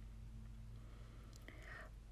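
Near silence: a faint, steady low hum, with a soft breathy rustle near the end.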